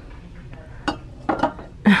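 A light ceramic clink as a glazed ceramic ghost figurine is handled on the shelf, followed by a woman's short laugh near the end.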